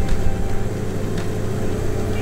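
Steady low drone of a vehicle cabin on the move, with faint background music.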